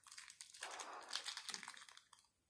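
Chocolate bar wrapper crinkling as it is opened by hand: a steady run of faint rustles and small crackles.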